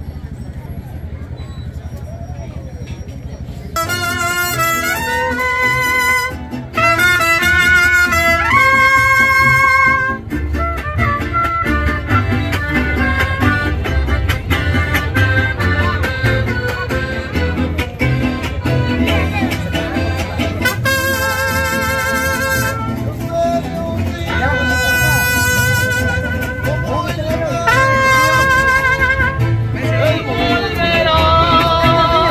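Trumpets and acoustic guitars playing together. From about four seconds in, the trumpets play held phrases with vibrato over strummed guitars and a bass line. The trumpets drop back in the middle and return in short phrases near the end.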